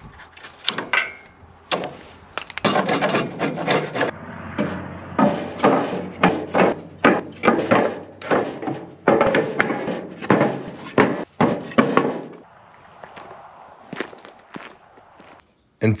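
Pressure-treated 2x8 deck boards knocking and scraping as they are slid and set onto a steel trailer frame: a quick run of wooden knocks and rubbing that thins out after about twelve seconds.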